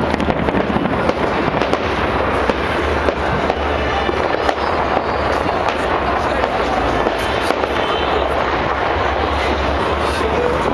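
New Year fireworks going off in a dense, unbroken crackle of many small bursts, with voices of a crowd mixed in.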